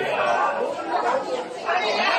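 Chatter of many diners talking over one another in a busy restaurant dining room.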